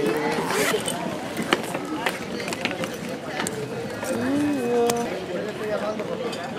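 Zipper on a clear plastic pouch pulled open, followed by a few light clicks and rustles of handling, with voices talking in the background.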